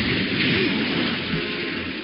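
Cartoon fight sound effect: a loud, steady rushing rumble of dust and debris, with soundtrack music faintly beneath it.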